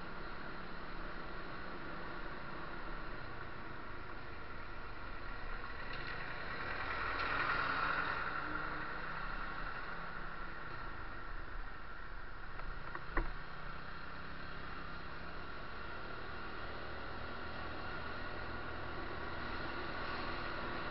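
Steady running noise of a vehicle carrying the camera along the street, swelling briefly about seven to eight seconds in, with a single sharp click about 13 seconds in.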